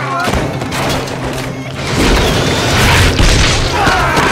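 Action-film soundtrack: music over a deep boom that swells about halfway through and rumbles for over a second, with voices shouting near the start and end.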